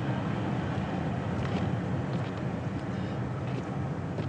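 Steady low rumble of a vintage car driving along: engine and road noise.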